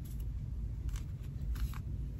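A few faint, short crinkles and rustles of a fabric charm pack's wrapping being pulled and worked by hand.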